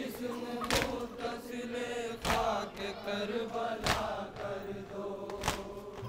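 A group of men chanting a Shia noha lament together, with the mourners striking their chests (matam) in unison about every one and a half seconds; each strike is a loud slap standing out above the chant.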